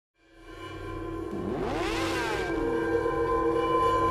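Logo intro sting: a sustained synthesized drone fades in, with crossing pitch sweeps that rise and fall about a second and a half in.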